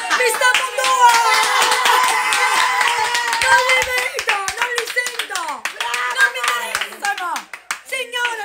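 A woman's loud, excited voice, mostly drawn-out exclamation rather than clear words, with a run of sharp hand claps over the first few seconds.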